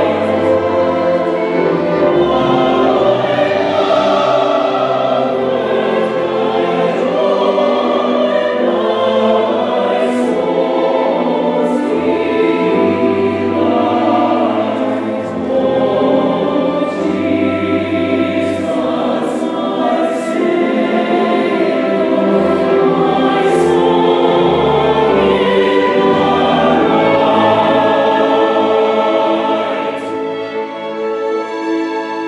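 Choir singing with a female soloist on a microphone, accompanied by strings.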